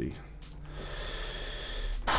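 A man breathing close to a headset microphone: a long, noisy breath that starts a little over half a second in and grows louder.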